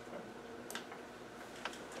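A few light clicks and ticks over quiet meeting-room tone.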